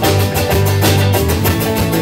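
Live rock band playing an instrumental passage: electric guitars, bass and drum kit with a steady beat.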